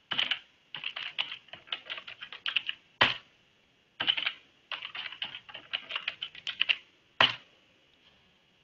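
Computer keyboard typing: a single key press, then two quick runs of keystrokes, each ending in one louder key press, as a password is typed and then typed again to confirm it.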